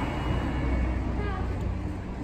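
City street ambience: a steady low rumble of passing traffic with faint voices in the background.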